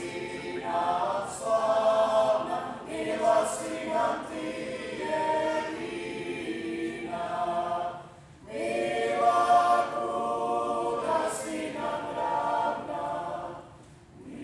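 A small mixed klapa group of women and men singing a national anthem a cappella in close harmony, with a short pause for breath about eight seconds in.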